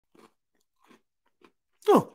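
A person chewing a lemon Oreo cookie, with three faint crunches. Near the end comes a short, loud voiced sound that falls in pitch.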